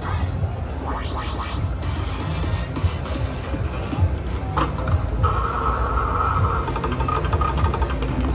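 IGT Pinball slot machine playing its electronic bonus-trigger music and sound effects as three Pinball symbols start the pinball bonus round. It has a steady low throb, some rising glides about a second in, and a held tone that comes in about five seconds in.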